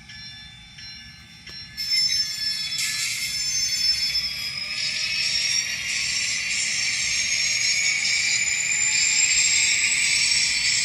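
The sound decoder of an N scale ScaleTrains EMD SD40-3 model locomotive, playing through its small onboard speaker. About two seconds in it grows louder as the diesel sound revs up, with a whine that rises slowly in pitch as the model gets under way. A bell rings about once a second.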